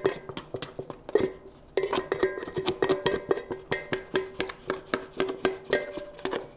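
Plastic pastry cutter scraping sticky sourdough out of a stainless steel mixing bowl: quick repeated scrapes and taps, several a second, with the bowl ringing under the strokes.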